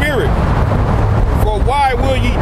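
Speech by a voice near the start and again in the last half second, over a steady low rumble from wind on the microphone and street traffic.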